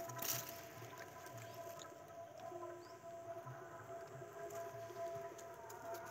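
A faint steady hum made of a few held tones, with a brief rustle about a third of a second in.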